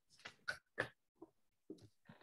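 A pet making a few short, faint sounds over the call's audio, the clearest two coming quickly one after the other about half a second in.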